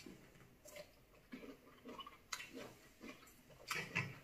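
Quiet table sounds: a handful of faint, scattered clicks and taps of cutlery on plates.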